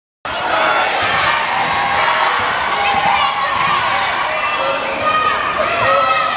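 A basketball dribbling on a hardwood gym floor during play, with a crowd chattering and calling out in the echoing arena.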